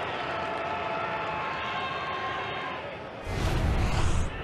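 Ballpark crowd murmur heard through a TV broadcast, with a few faint held tones in it. Near the end a loud, low rumbling boom lasts about a second.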